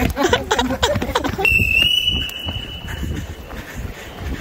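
Voices for about a second, then a single high-pitched steady tone that starts suddenly about one and a half seconds in and lasts nearly two seconds.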